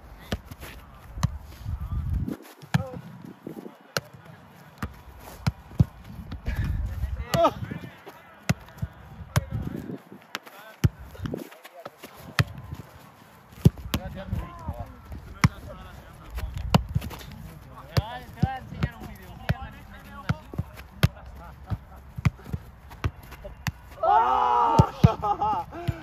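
A football being kept up and passed between players: repeated sharp, irregular thuds of the ball on feet, heads and chests, with short shouts and voices between touches and a loud voice near the end.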